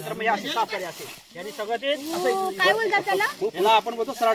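Men's voices talking, at times over one another.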